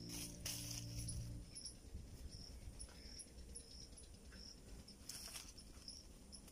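Faint, brief rasping calls from nestlings in a stick nest, once about half a second in and again about five seconds in, over quiet outdoor background. Lingering music tones fade out during the first second and a half.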